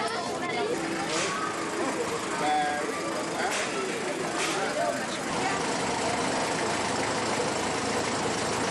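Street crowd chatter, then from about midway a vehicle engine running steadily as a small tourist road train passes close.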